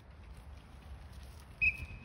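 A short, high-pitched whistle-like tone about one and a half seconds in, fading quickly, over a faint low rumble.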